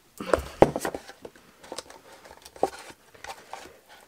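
Handling noise from a small cardstock box and satin ribbon being worked by hand on a craft desk: a cluster of light knocks about half a second in, then scattered soft clicks and rustles.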